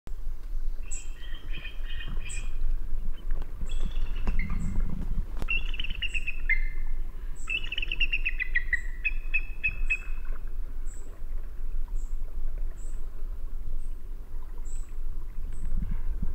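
Songbirds chirping and trilling, with several falling trills in the first ten seconds and a short, high chirp repeating about once a second throughout, over a low rumble.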